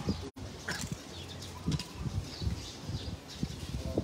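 Small birds chirping in short calls over irregular low thumps and rustling, with a brief gap in the sound just after the start.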